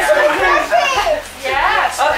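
Young children's voices, high-pitched and without clear words, with rising calls about half a second in and again near the end.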